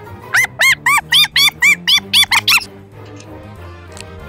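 A rapid run of about ten high, squeaky chirps, about four a second, each rising and falling in pitch, over steady background music.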